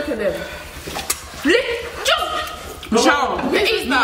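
Excited voices of several people, with short high cries that slide sharply upward, about a second and a half in and again about three seconds in.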